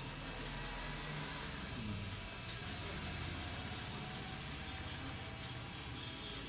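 A steady low mechanical hum, like a motor running, with no speech or music over it.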